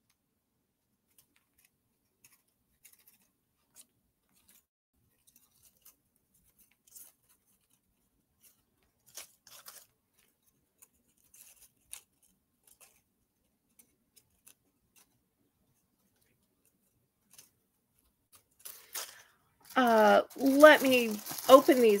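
Mostly near silence, broken by scattered faint clicks and soft rustles. A woman starts speaking near the end.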